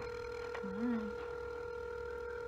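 Ringback tone of an outgoing mobile phone call heard through the phone's speaker: a single steady tone, the call ringing and not yet answered.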